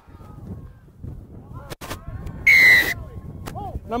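Rugby referee's pea whistle: one sharp blast of about half a second, about two and a half seconds in, blown for a penalty against a player not rolling away after the tackle. Players' shouts are faint before it.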